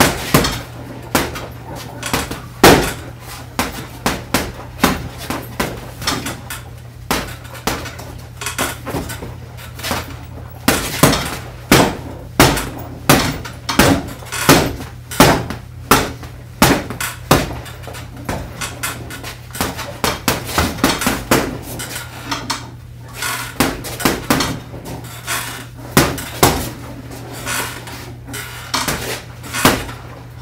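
Gloved punches landing on a hanging water-filled rubber heavy bag: a long series of sharp impacts, thrown in quick combinations of two to several strikes with short pauses between them.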